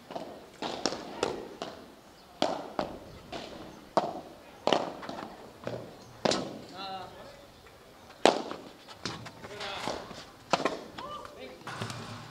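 A padel ball hit back and forth with solid padel rackets during a rally: a string of sharp pops, irregularly spaced, with the ball's bounces in between, the hardest hit about two thirds of the way in.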